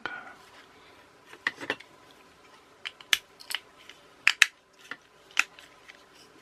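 Scattered sharp clicks and taps of small plastic and metal parts as the black plastic clockwork gearbox of a 1991 TOMY toy boat is handled and its pieces are lined up to fit together. About eight clicks, the loudest pair close together a little past the middle.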